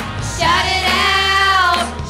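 Live worship song from a youth worship group: a voice holds one long sung note, starting about half a second in and ending near the end, over steady accompaniment.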